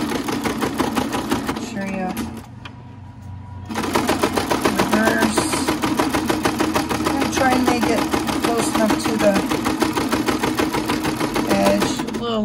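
Singer Starlet sewing machine stitching through layers of fleece, its needle running in a fast, even rattle. It stops about two seconds in and starts up again about a second and a half later.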